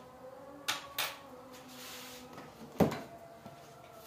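Kitchen items handled on a counter: two light clicks about a second in and a sharper knock near three seconds, over a faint hiss.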